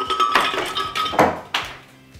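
Ice cubes tipped from a bowl into a glass blender jar, clattering and clinking in a quick run of knocks over the first second and a half.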